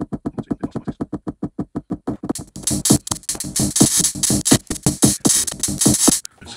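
Drum-machine beat from a Novation Circuit Tracks groovebox, heard through a small speaker: an even run of quick hits, about eight a second, joined about two seconds in by a fuller, brighter pattern with hissy hi-hats.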